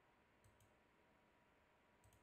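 Near silence, with two faint quick clicks about half a second in.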